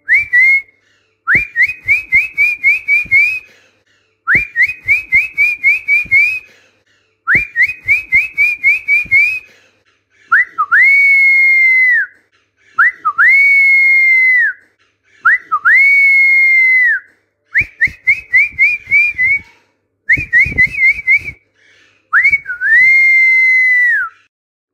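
Whistled training phrases for parrots to imitate. First come groups of about six quick rising whistles. From about ten seconds in there are three long held whistles that swoop up and drop off at the end, then more quick groups, and a final long whistle near the end.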